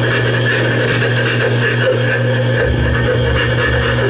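Noise music played live: a loud, steady, dense drone of effects-processed sound over a constant low hum, joined by a deep low rumble about two-thirds of the way through.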